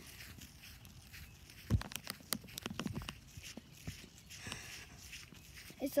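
Footsteps and phone-handling knocks as a person walks along carrying a phone: a cluster of sharp clicks and a low thump about two seconds in, then scattered faint rustles.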